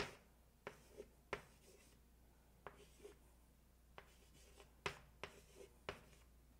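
Chalk writing on a blackboard: short, irregular taps and strokes of the chalk, faint, with quiet gaps between them.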